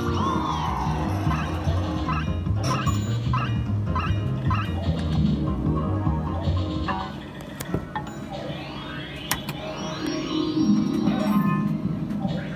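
Rainbow Riches fruit machine playing its electronic game music and sound effects: a rising tone, then a run of evenly spaced beeps about two a second, starting about two and a half seconds in, over a looping tune. A few sharp clicks follow, then another jingle near the end.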